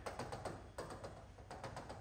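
Stylus tip tapping on an interactive display screen in quick, faint taps, several a second, as short dash strokes are drawn one after another.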